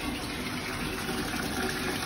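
Water running steadily from the tap into a bathtub as it fills.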